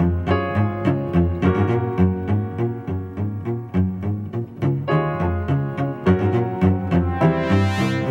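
Runway show music: a deep bass line moving under keyboard notes, with a steady beat.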